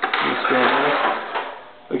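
A drawer in a paper cutter's cabinet stand is pushed shut, with a click and then a scraping slide that fades out near the end.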